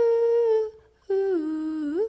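A wordless humming melody in background music: two long held notes with a short pause between them, the second sliding down in pitch and gliding back up at its end.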